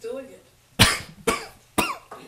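A man coughing three times, sharp and about half a second apart, brought on by inhaling strong cologne.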